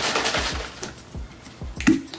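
Whey powder being mixed in a plastic shaker bottle: a short rustling hiss at the start, then a single sharp knock near the end as the bottle is handled. Faint background music with a steady beat underneath.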